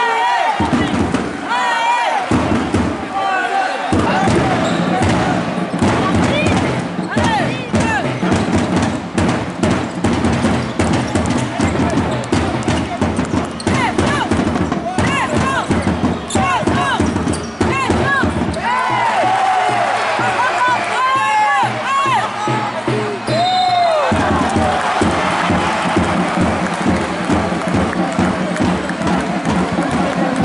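Basketball game on a hardwood court: the ball bouncing and sneakers squeaking over crowd voices and arena music.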